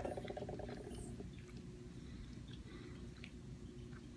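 Faint chewing of a soft gummy candy, with a brief pitched hum in the first second.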